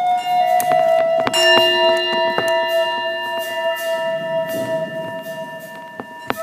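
A wooden flute holds one long note while metal percussion is struck several times, about half a second to two and a half seconds in, its tones ringing on and slowly dying away.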